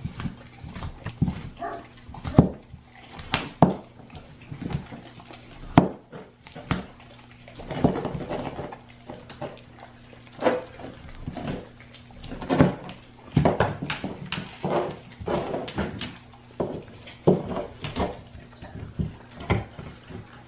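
A Great Dane puppy gnawing and chewing on a raw deer shank bone: irregular wet chewing broken by sharp cracks and clicks of teeth on bone, several a second.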